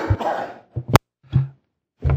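A man coughing and clearing his throat, with one sharp click just before a second in.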